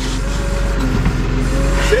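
A truck engine idling: a steady low drone with an even, rapid pulse.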